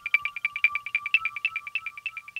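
A high, plucky synthesizer sequence of short beeping blips, about ten notes a second, stepping between a few pitches, with no bass or drums under it.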